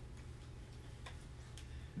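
A clock ticking faintly and evenly, about two ticks a second, over a low steady room hum.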